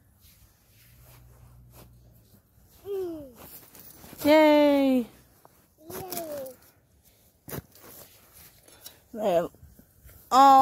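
A person's wordless vocal sounds: a few drawn-out hums or groans that slide down in pitch, the longest and loudest about four seconds in, and a shorter rising-and-falling one near the end. A single sharp click comes about seven and a half seconds in.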